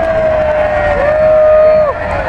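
One loud, long held shout over the din of a large outdoor crowd. The voice glides up into a single sustained note about halfway through and breaks off sharply just before the end.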